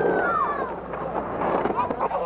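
Camcorder audio of a skate session: voices shouting in a few rising-and-falling calls near the start, over the rough rolling of skateboard wheels on pavement.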